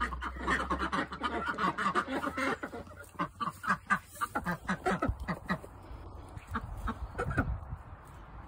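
Domestic ducks quacking in a rapid run of short repeated calls, thinning out to fewer, spaced calls in the last few seconds.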